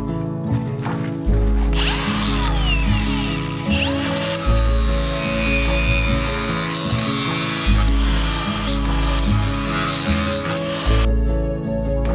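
Angle grinder spinning up about two seconds in and grinding a steel bar clamped in a vise, then winding down near the end. Background music with a steady beat plays throughout.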